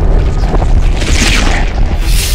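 Cinematic sound-design boom: a loud, deep, sustained rumble with a swell of hissing, whoosh-like noise about a second in.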